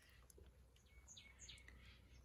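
Near silence: room tone with a low hum and a few faint, brief ticks.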